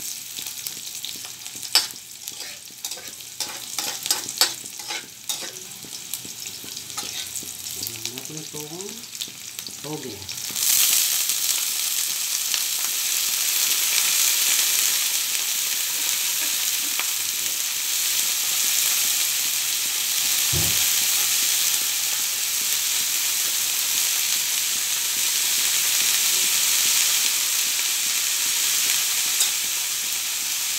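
A metal spatula scrapes and clicks against a wok over a light sizzle of onions frying in oil. About ten seconds in, a heap of mung bean sprouts goes into the hot wok and the sizzle jumps to a loud, steady hiss that keeps going, with one dull thump partway through.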